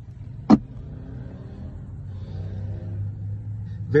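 Low, steady rumble inside a car's cabin, with one sharp knock about half a second in.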